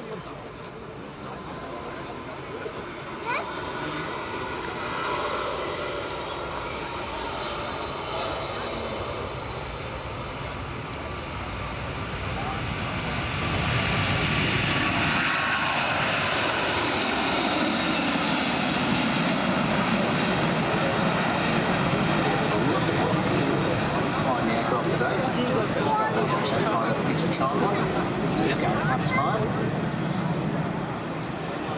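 Airbus A380 taking off on its four turbofan engines at takeoff thrust. The jet noise grows loud about halfway in as the aircraft lifts off and passes, with a pitch that slides steadily downward. A loud, steady jet noise follows as it climbs away.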